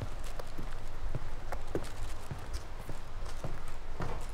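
Footsteps walking on the wooden plank deck of a covered bridge: an uneven run of short knocks, a few a second.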